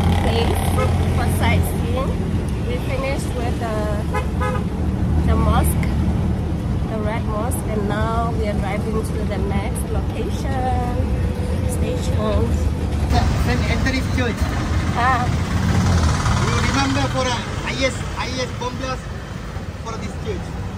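Auto-rickshaw (tuk-tuk) engine running with a steady low drone, heard from inside the open cabin while riding through traffic.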